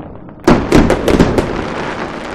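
Aerial fireworks going off. About half a second in comes a quick volley of about six sharp bangs within a second, which then trails off into a fading wash of sound.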